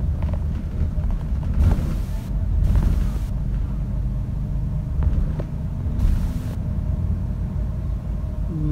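Steady low rumble of a hybrid double-decker bus's drivetrain and road noise, heard from inside the upper deck, with three short bursts of hiss about two, three and six seconds in.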